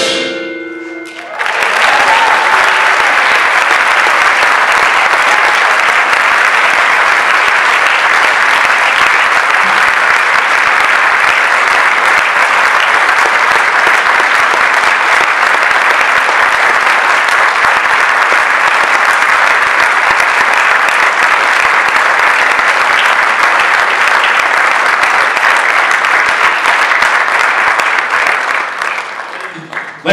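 The percussion ensemble's final chord cuts off, and about a second and a half later an audience starts applauding. The applause holds steady and fades out near the end.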